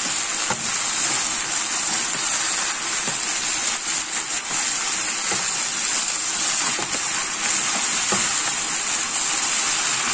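Swiss chard leaves frying in oil in a pan, a steady sizzle with a few light clicks as the leaves are turned.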